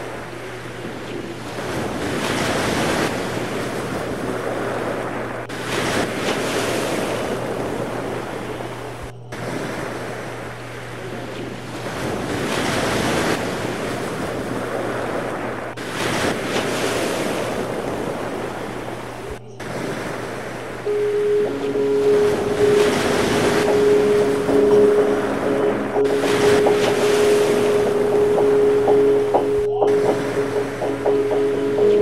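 Rushing water and wind noise from a kitesurfing run, swelling and fading every few seconds as the board cuts through the surf, over a steady low hum. A held musical note with lower tones comes in about two-thirds of the way through.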